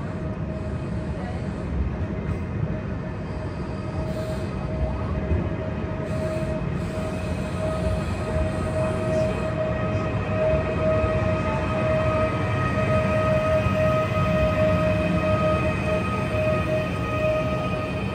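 Talgo-built Afrosiyob high-speed electric train moving slowly past: a low rumble with a steady, even-pitched electric whine that grows louder through the middle and eases slightly near the end.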